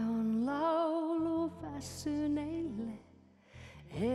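A woman singing a slow, gentle song to her own electronic keyboard accompaniment: long held notes with vibrato over sustained low chords. The voice breaks off about three seconds in, leaving a short pause before the next line.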